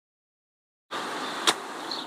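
Opening of a car advert's soundtrack: silence, then a steady background hiss starts suddenly about a second in, with one sharp click halfway through.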